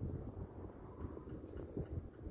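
Wind buffeting the microphone: a low, uneven rumble that rises and falls in gusts.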